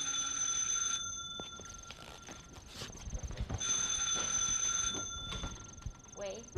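An old-style desk telephone bell ringing twice. Each ring is a trill of about a second and a half, and the second ring comes about three and a half seconds after the first.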